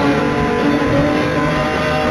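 Live rock band playing: a continuous, loud wash of electric guitar with held notes over bass and drums.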